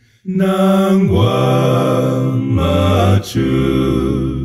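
A cappella male gospel hymn singing in close harmony: one singer's overdubbed voices hold sustained chords over a low bass part. It starts after a brief pause and has a short break about three seconds in.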